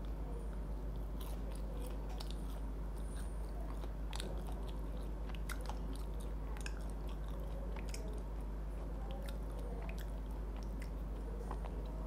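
A person chewing KFC Golden Butter Cereal fried chicken, with small crunches of the crispy cereal-coated crust scattered throughout. A steady low hum lies under it.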